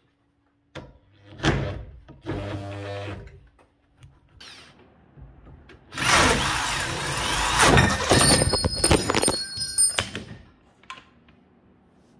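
Electric drill boring out a stripped thread hole in an aluminium engine mount with a large bit: two short bursts of drilling, then a longer, louder run from about six seconds in with clattering knocks, the bit catching and jamming in the hole.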